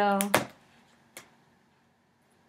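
A woman's voice trailing off, then near silence with a sharp click just after she stops and a fainter click about a second in.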